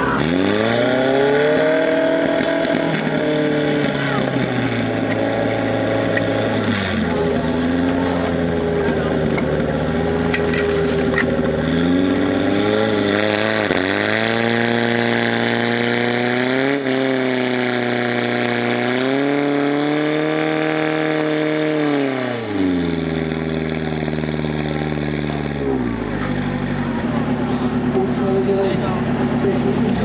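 Portable fire pump's petrol engine running hard under load, pumping water out to the attack hoses. Its pitch leaps up right at the start, then dips and climbs again several times, and drops lower toward the end.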